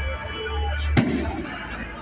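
A single sharp firework bang about a second in, with a short echo trailing after it. Through the phone's microphone it sounds like a gunshot.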